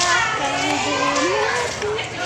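Chatter of several young voices talking over one another, with no single speaker standing out.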